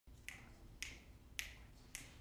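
Four faint, evenly spaced clicks about half a second apart, a steady count-in that brings the band in on the next beat.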